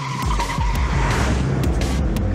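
Sports car tyres squealing through a hard corner over a loud engine, with a steady squeal held through the first second.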